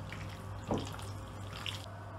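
Hand squeezing and mixing raw chicken pieces in a wet lemon-juice and chili-powder marinade in a glass bowl: faint wet squelching, with one short soft squish about a third of the way in, over a steady low hum.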